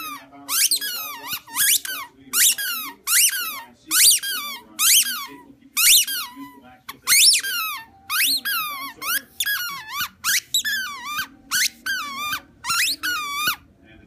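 A dog chewing a squeaky tennis ball, setting off a rapid, irregular run of high-pitched squeaks that each fall in pitch, with a short pause about halfway through.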